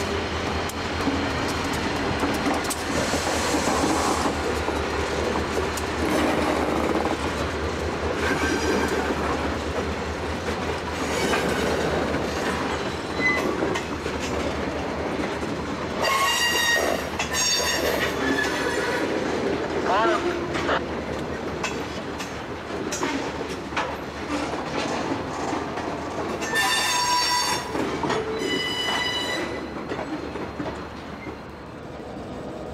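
A slow-moving freight train's cars rolling past with a steady rumble. The wheels give short, high-pitched squeals, loudest a little past halfway and again near the end.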